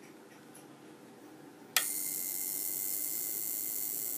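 A spark gap driven by a neon sign transformer switched on about two seconds in: a sharp snap, then a steady buzzing hiss as the gap arcs continuously.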